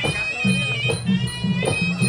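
Traditional Khmer boxing music: a shrill, wavering reed-pipe melody, the sralai, over a repeating pattern of low drumbeats.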